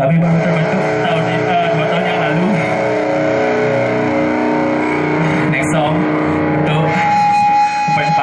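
Live band playing loud, heavily distorted electric guitars over drums, with the vocalist shouting into the mic. Sustained chords ring through the middle, and a steady high tone comes in near the end.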